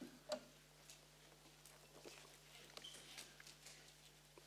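Near silence over a faint low hum, broken by scattered faint ticks and soft rustling from Bible pages being turned, with one sharper tick about a third of a second in.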